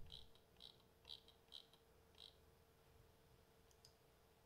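Near silence with about five faint computer mouse clicks, roughly half a second apart.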